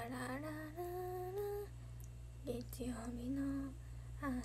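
A young woman humming a tune softly to herself, held notes that step and glide up and down, in two phrases with a short break in the middle.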